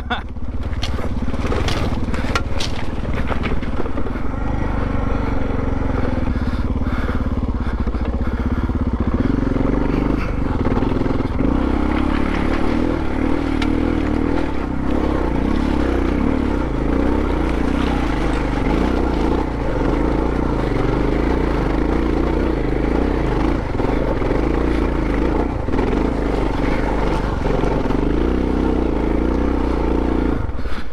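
Dual-sport motorcycle engine pulling under load up a steep, loose rocky climb, with stones knocking and crunching under the tyres. The engine works harder from about nine seconds in.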